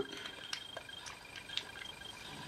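A few faint, small clicks and taps of the metal parts of a vintage aircraft toggle switch as they are handled and fitted together by hand.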